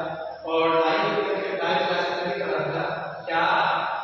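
Sing-song chanted recitation of Arabic: a voice draws out one long phrase, then starts a new one about three seconds in.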